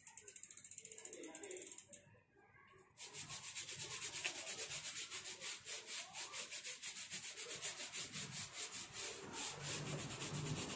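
Brush scrubbing a mountain bike's chain and rear cassette in fast, even strokes, about seven a second, with a brief pause about two seconds in before the scrubbing resumes.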